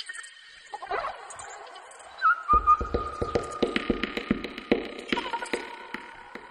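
Psybient electronic music: sustained synth tones, joined about two and a half seconds in by a quick run of deep drum hits that drops out near the end, leaving a held tone.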